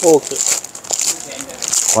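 Clear plastic garment packaging crinkling as plastic-wrapped packs of ready-made tops are handled and flipped through by hand.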